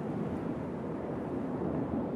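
Steady low background ambience, an even rumble and hiss with no distinct event in it.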